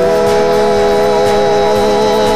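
Electric organ holding a sustained chord, its tones wavering in an even vibrato, in gospel music.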